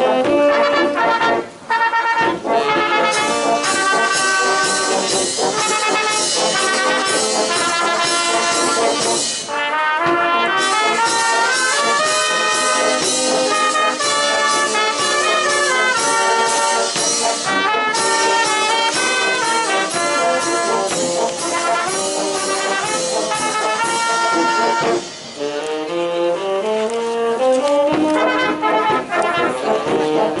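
Brass band of trumpets, horns and tubas playing a concert march live. The music drops out briefly about a second and a half in, and again near the end, where it picks up with rising stepwise runs.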